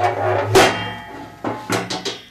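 Metal hopper lid on top of a pellet stove being shut: several clanks, each with a short metallic ring.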